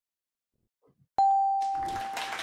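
Game-show sound effect for a correct answer. After a second of silence, a single bell-like ding strikes about a second in and rings on, fading, as the answer is revealed on the board.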